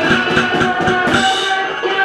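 Loud live cybergrind/noisecore music: rapid drum-kit hits over a dense wall of distorted noise with a few steady held tones.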